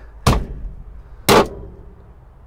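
Two loud metallic thunks about a second apart as a gloved hand bangs on a hinged steel lid in an old pickup's cab to force it open.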